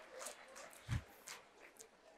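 Faint scattered knocks and rustles, with one soft low thump about a second in, from a person moving about a stage.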